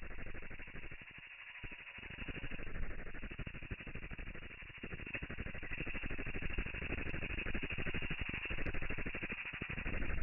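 Domestic ultrasonic cleaner running with its water cavitating, heard slowed to one eighth of real speed: a dense, low, grainy crackle that swells and dips, with no clear tones.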